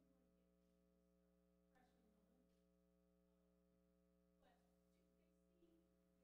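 Near silence: a faint steady electrical hum, with a few very faint brief sounds.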